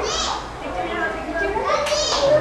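Excited voices of children and adults chattering over one another, with high-pitched children's squeals at the start and again near the end.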